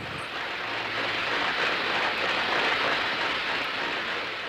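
Steady rushing, hissing noise from an old black-and-white film's laboratory scene. It swells toward the middle and eases off near the end, with a faint low hum underneath about a second in.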